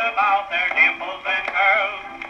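A worn Goodson record of a male-vocal dance band number playing on an Apollo Super portable gramophone's acoustic soundbox. The sound is thin and narrow with no bass, and the singing has a wavering vibrato. The record's worn, crackly surface gives a faint click about one and a half seconds in.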